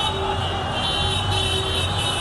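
Busy city street din: road traffic and a large crowd of marchers, a steady, unbroken wash of noise.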